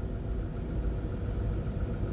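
Steady low rumble of a car's engine and running gear heard inside the cabin, the car idling and crawling along in slow stop-and-go traffic.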